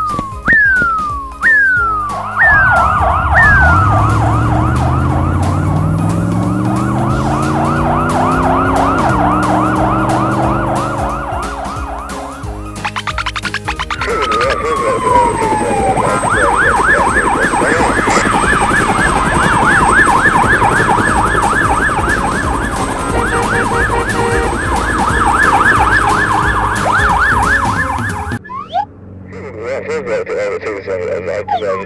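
Cartoon emergency-vehicle siren. It opens with slow falling wails about once a second, then switches to a fast electronic yelp repeating several times a second, with a low rising tone under it in the first half. After a break around the middle it sweeps down once and yelps fast again, stopping shortly before the end.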